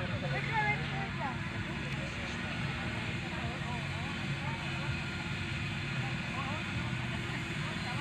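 A steady low motor drone with faint distant voices over it.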